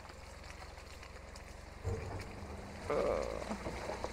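Pickup truck engine running low and steady, then pulling harder under throttle about two seconds in as the truck climbs out of a muddy rut, with a brief louder rough noise about three seconds in.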